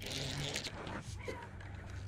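Okuma Hakai baitcasting reel being cranked to reel in a hooked fish: a soft, steady whir with faint ticks, starting with a sharp click.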